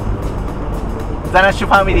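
Steady low rumble of a 1955 Nash Rambler station wagon's engine and road noise, heard from inside the cabin while driving.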